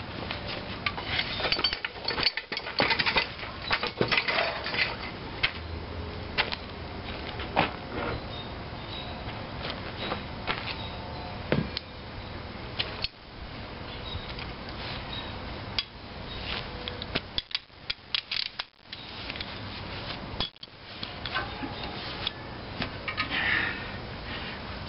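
Irregular metallic clinks and knocks of steel tools against cast-iron engine parts, as the gas tank of an antique International Type M engine is being unbolted and the engine body handled.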